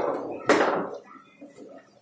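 One sharp, loud crack about half a second in as the hard foosball ball is struck on the table, fading over a moment, followed by a few faint knocks of play.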